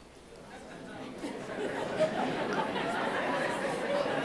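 Audience murmuring and chattering among themselves, swelling from near quiet to a steady hubbub over the first couple of seconds.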